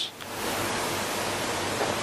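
A steady, even hiss with no distinct events, starting just after the voice stops and cutting off suddenly as the voice returns.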